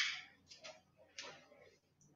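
Faint handling noises: one sharp click that fades quickly, then a few soft scuffs and taps.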